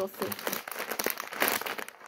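Plastic packet of Gallo tiburón dry pasta crinkling as it is handled and turned over in the hands, an irregular run of crackles.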